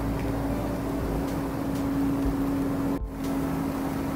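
Jetted bathtub's jet pump running with the water churning, a steady hum; it breaks off for an instant about three seconds in and carries on unchanged.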